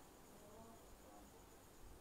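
Near silence: room tone with a faint, high-pitched tone pulsing evenly throughout, and a few faint murmur-like fragments in the second half.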